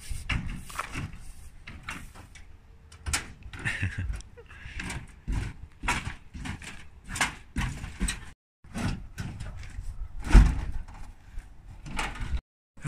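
Scrap sheet metal and old eavestrough pieces clattering and banging as they are tossed and stacked in a pickup truck bed: a string of irregular knocks and rattles, the heaviest thud about ten seconds in.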